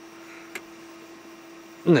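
Steady low electrical hum from the van's inverter-powered cooking setup running under a heavy load, with a faint hiss and a small click about half a second in. A man's voice begins near the end.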